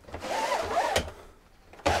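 Pleated privacy blind of a caravan window being pushed up along its side tracks by hand: a scraping slide with a faint wavering squeak, ending in a click about a second in, then another slide starting near the end.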